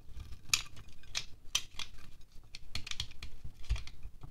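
A small knife blade scraping wax off a candle, flaking off shavings in a quick, somewhat irregular series of short, crisp strokes, about two a second.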